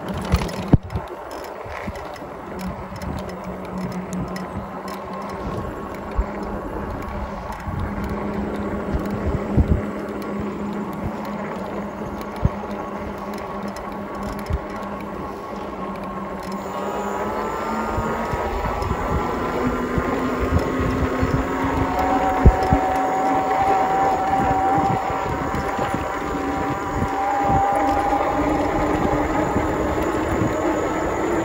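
Electric e-bike hub motors whining under pedal assist, a steady hum whose tones climb in pitch and grow louder from about halfway through as the bike speeds up. A couple of sharp knocks right at the start come from the wheels crossing railroad tracks.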